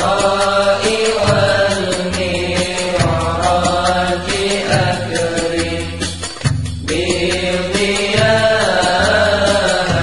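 Sholawat (Islamic devotional song): chanted vocals with instrumental accompaniment and repeating low bass notes.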